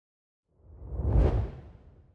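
Intro whoosh sound effect: a single noisy swell with a deep rumble underneath, building from about half a second in, loudest near the middle, then fading away.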